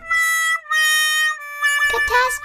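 Comedic music sting: three held reedy notes with a buzzy, harmonica-like tone, each a little lower than the last, a letdown sound effect.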